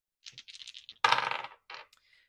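Astrology dice clattering on a hard surface: a run of quick clicks, then a louder dense clatter about a second in, and a short last rattle near the end.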